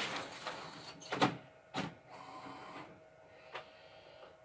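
Large-format printer at work: a run of noise from the machine fades out in the first half second, then a few sharp clicks from its mechanism, two about a second apart and a smaller one near the end, over a faint steady whine.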